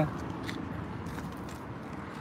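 Low, steady street background noise in a pause between voices, with a couple of faint clicks.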